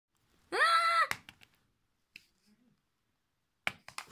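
A child's high-pitched voiced cry, held for about half a second and falling away at the end, followed by several light clicks and taps of plastic toy figures on the carpet, the last few just before the end as the figures tumble.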